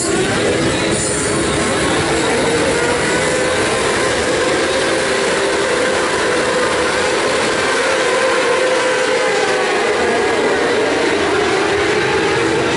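A full grid of 600cc Supersport racing motorcycles revving together at the start line, a loud, dense, steady wall of engine noise, with the pack pulling away off the line late on.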